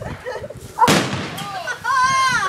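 A firework going off with a single sharp bang about a second in.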